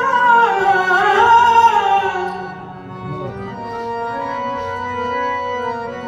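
A male kirtan singer holds a long, wavering note that bends downward and ends about two seconds in. After that the harmonium plays on alone, quieter, with steady sustained chords.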